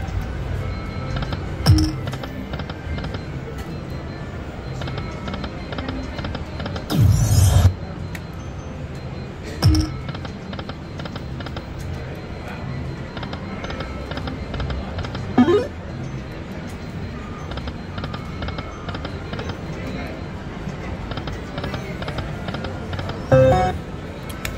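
Lightning Link 'High Stakes' slot machine's music and reel-spin sounds as it is played spin after spin. A few short louder sounds stand out over a steady mix of background sound.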